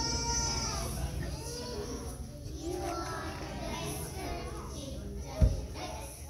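A group of young children talking and calling out together, with a high child's voice near the start. A single low thump about five and a half seconds in is the loudest sound.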